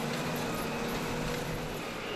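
Krone BiG Pack 1290 HDP II large square baler running as it picks up straw: a steady mechanical drone with a faint hum.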